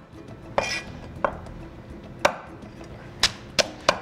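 Cleaver chopping through crab shell onto a wooden cutting board as a whole crab is quartered: about six sharp chops, spaced out at first, the last three coming quickly near the end.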